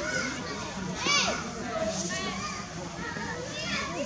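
Many overlapping high-pitched voices, like children playing, with a louder arching call about a second in.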